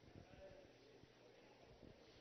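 Near silence: the room tone of a large chamber, with faint small clicks.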